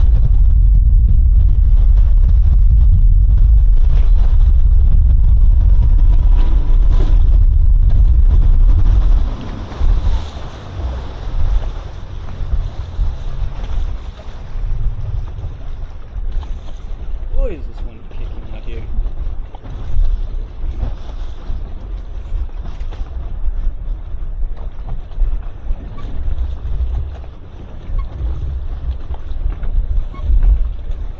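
Outboard-powered boat underway, with wind buffeting the microphone and a steady low rush; about nine seconds in the loud rush drops away as the boat slows, leaving gusty wind on the microphone and water around the hull.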